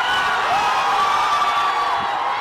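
A large crowd of fans cheering and shouting together, with a long drawn-out shout held for over a second above the din.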